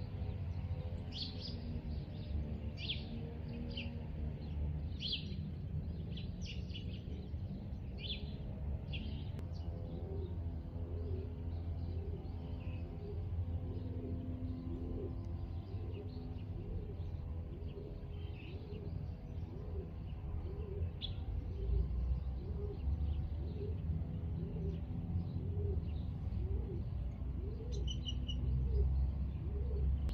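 Small birds chirping in short, quick calls, thick in the first ten seconds and sparser after, over a steady low rumble.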